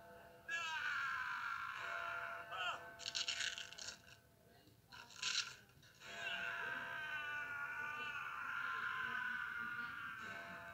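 Film soundtrack: a long, high, wavering cry from a cartoon character, slowly falling in pitch. It is broken by two short, sharp noise bursts about three and five seconds in, then returns and holds.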